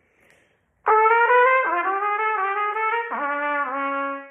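Trumpet playing a short example passage of quick sixteenth-note figures, starting about a second in and ending on a lower held note.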